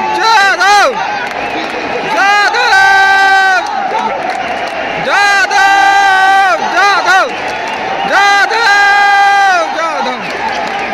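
A man close by shouting a chant in a repeated pattern, a few short rising cries and then one long held note, about four times over, above the steady noise of a packed stadium crowd.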